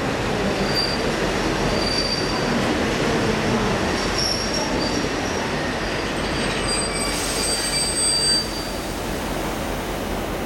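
Locomotive-hauled passenger carriages rolling slowly to a stop at a platform: a steady rumble with short, intermittent high-pitched wheel squeals as the train brakes. The squeals and some of the rumble stop about eight seconds in, as the train comes to a stand.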